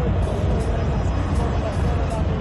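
Loud, bass-heavy live concert music, with people talking over it.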